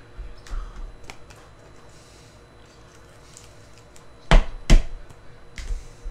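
Hands handling trading-card packs and cards on a tabletop: a few faint clicks, then two sharp knocks against the table a little after four seconds in, and a lighter knock near the end.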